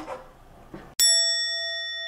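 A single bell-like ding, an edited-in sound effect, struck once about a second in and ringing on steadily with several overtones. Before it there is only faint room sound.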